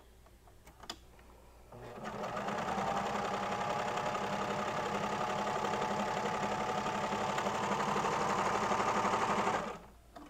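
Baby Lock Celebrate serger (overlocker) starting up about two seconds in, coming up to speed and running steadily while sewing a seam in knit fabric, then stopping suddenly just before the end.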